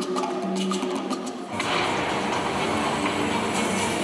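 Film soundtrack played through a theatre's speakers. A percussive Latin-style music passage with sharp clicks gives way suddenly, about a second and a half in, to a dense rushing rumble under the music.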